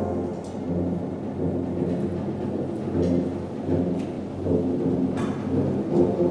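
A low rumbling roll on the band's percussion, like a soft timpani or bass drum roll, in a quiet passage between brass chords, with a few sharp clicks over it.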